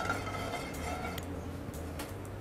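Commercial kitchen background: a steady low hum, with a single sharp click a little over a second in.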